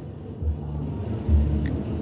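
A low rumble with no speech over it, swelling about a second and a half in.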